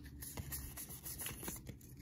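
Faint rustling, light scraping and small ticks of Pokémon trading cards being handled and shuffled in the hands.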